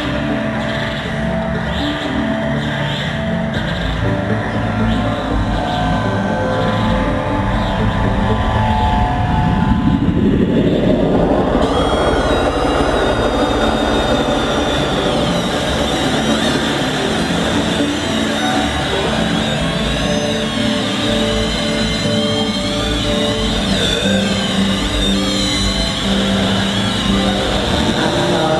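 Live electronic music heard through an audience recording: layered droning synthesizer tones. About nine seconds in, a noisy sweep rises steeply in pitch over about three seconds, and warbling high tones follow.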